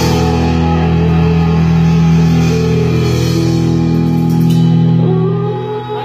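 Live rock band playing an instrumental passage on guitar and drum kit, built on a long held chord that eases off about five seconds in.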